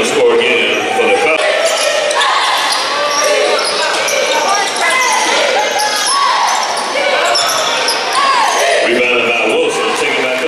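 Basketball game sound in a gymnasium: a ball being dribbled on the hardwood floor, over a steady mix of players' and spectators' voices calling out.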